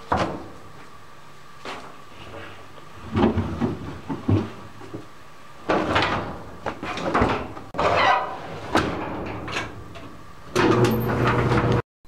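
Clothes dryer being loaded by hand: a string of knocks and thumps as the door is handled and laundry goes into the drum. Near the end a steady machine hum starts, then cuts off abruptly.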